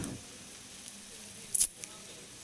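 A pause in speech: faint room tone and hiss from the service's microphone recording, with one brief soft noise, a breath or small click, about one and a half seconds in.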